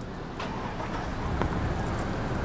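Steady low rumble of car traffic in a parking lot, with two faint clicks about half a second and a second and a half in.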